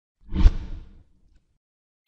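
A single whoosh sound effect with a deep low boom, swelling quickly a quarter of a second in and fading out within about a second.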